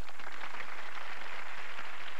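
Studio audience applauding, a dense steady patter of many hands clapping.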